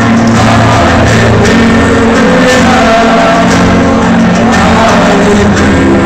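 A man singing to a strummed acoustic guitar, amplified through a PA and recorded very loud.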